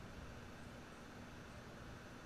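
Faint, steady hiss of room noise with a low, even hum and no distinct events.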